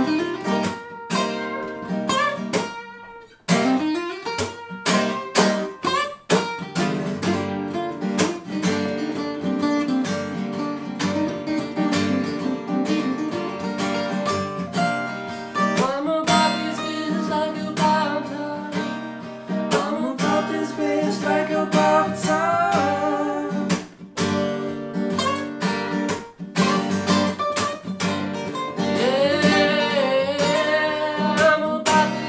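Two acoustic guitars played together, strummed and picked, with a brief stop about three and a half seconds in before the playing resumes.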